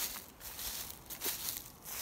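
Footsteps crunching on dry grass and fallen leaves, with faint crackling throughout and one sharp click at the very start.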